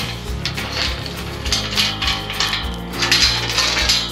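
Background music, with a steel chain clinking and rattling against a rusty steel pipe gate as it is handled, a series of short metallic clinks.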